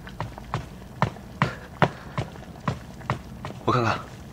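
Footsteps walking at a steady pace, about eight steps at roughly two a second, coming up to the table, with a man's short remark near the end.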